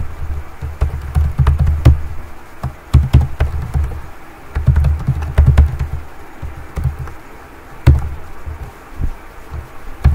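Typing on a computer keyboard: irregular key clicks, each with a dull low thud, coming in short bursts with brief pauses between them.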